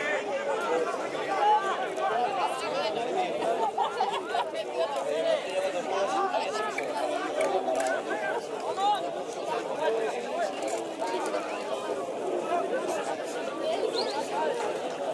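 Indistinct chatter: several voices talking over one another throughout, with no single clear speaker.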